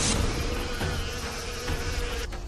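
Dense, steady buzzing of a large swarm of flies, over a low rumble.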